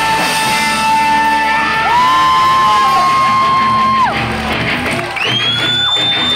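Punk rock band playing live in a large hall: electric guitar, drums and shouted vocals, with long steady high notes held over the top, one of them sliding up about five seconds in.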